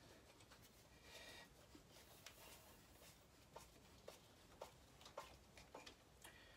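Near silence with faint scraping and small clicks, about two a second in the second half, as a Phillips screwdriver is turned to drive motor mounting screws into a scooter frame.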